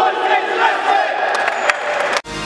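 A futsal team shouting a cheer together in a huddle, many men's voices at once.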